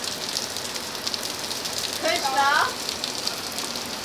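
Heavy rain pattering steadily on paving slabs and a shed roof. A person's voice calls out briefly about two seconds in.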